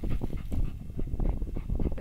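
Dog snuffling and sniffing rapidly and irregularly with its nose pushed into a hole in the soil, hunting a rodent in its burrow.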